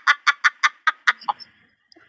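A woman's rapid, high-pitched laugh: a quick string of short ha-ha pulses, about seven a second, that slows and fades out a little over a second in.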